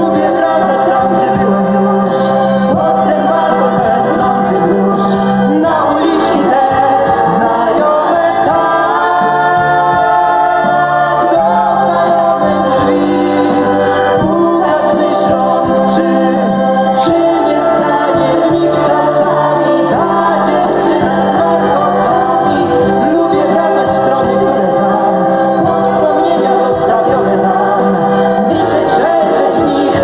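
A live pop song: several male and female voices singing together over a band accompaniment, with long held notes.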